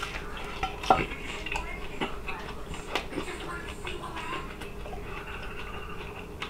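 A person biting into and chewing a chicken drumstick, with a few light clicks about one, two and three seconds in.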